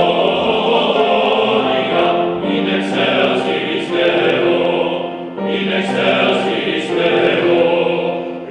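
Male vocal octet singing Christmas music in close harmony, holding sustained chords in phrases that break briefly about two and a half and five and a half seconds in.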